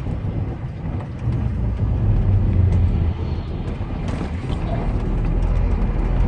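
Heavy truck's diesel engine running with a steady low drone, heard from inside the cab while driving slowly, with faint clicks and rattles over it.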